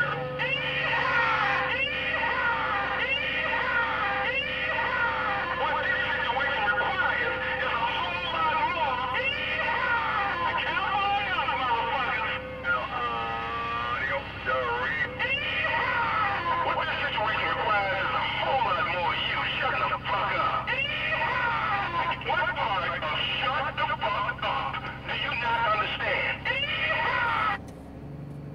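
CB radio receiving on channel 19: garbled, overlapping voices of other stations through the radio's speaker, too distorted for any words to come through, with a steady tone underneath for roughly the first twelve seconds.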